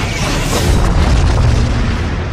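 Film sound effect of a huge explosion, the blast of a mushroom cloud: a deep boom that swells about half a second in into a sustained low rumble, with trailer music underneath.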